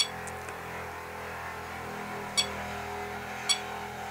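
Three short, high-pitched beeps from the ToolkitRC M6 charger's touch buttons as they are pressed: one at the start, one a little past halfway and one near the end, over a low steady hum.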